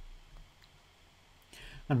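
A few faint, sharp clicks and taps of a stylus on a drawing tablet while writing by hand, over a quiet room.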